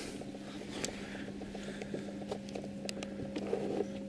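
Steady low hum of running aquarium equipment, with a few faint, scattered ticks and clicks.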